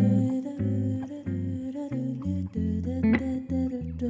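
Hollow-body electric guitar playing jazz chords with bass notes, while a woman hums a wavering melody over it.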